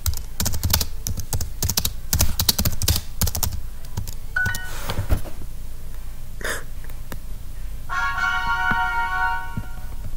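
Typing on a computer keyboard, a quick run of key clicks, then a short electronic chime. About eight seconds in, Duolingo's lesson-complete jingle plays, a short run of bright tones that marks the finished lesson.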